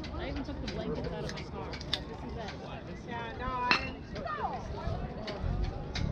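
Spectators talking beside a baseball field, with a sharp crack about three and a half seconds in, a bat hitting a pitched ball, followed by calls and shouts as the ball is put in play.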